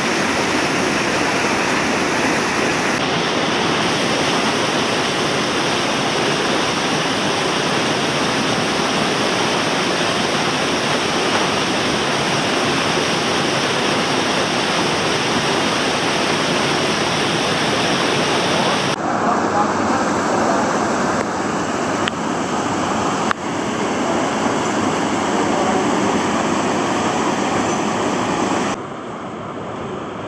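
Waterfall and whitewater in a narrow gorge rushing steadily. The rush changes abruptly a few times and drops quieter near the end.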